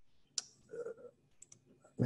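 A single sharp click about half a second in, then a faint brief murmur and a couple of small clicks near the end.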